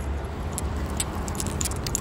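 Low steady rumble of road traffic, with light scattered clicks and jingles over it.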